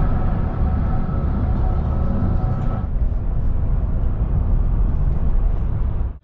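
Road and wind noise of a car in motion, a loud, steady low rumble, with a faint steady hum in it that stops about three seconds in.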